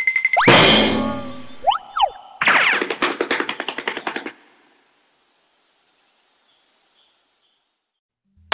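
A short run of cartoon sound effects with music: a rising whoosh, a quick pair of up-and-down whistle-like glides, then a dense rattling flourish. After about four and a half seconds it cuts off to silence.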